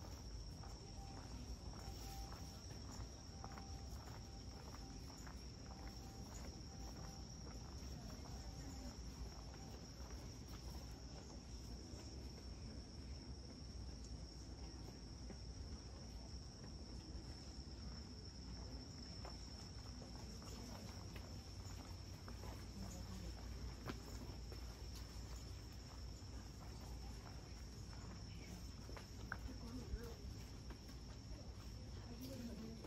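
A faint, steady high-pitched chorus of insects singing in the summer night, with soft footsteps on the paved lane beneath it.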